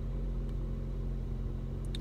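Car engine idling, a steady low hum heard from inside the cabin, with a couple of faint ticks near the end.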